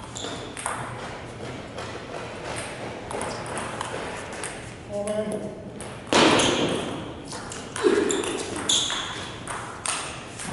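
Table tennis balls clicking off paddles and tables in a gym hall, with a string of short sharp pings. A brief voice comes in near the middle, followed at once by a loud sudden burst, then another strong hit a couple of seconds later.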